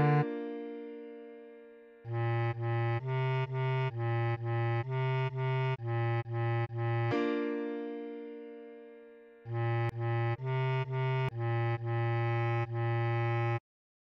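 Bass clarinet playing a melody of short, evenly spaced repeated notes in two runs, over a piano chord that rings and fades between them. The sound cuts off suddenly just before the end.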